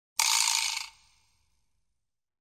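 Short transition sound effect in an end-screen animation: one hissy burst of under a second that ends abruptly, followed by silence.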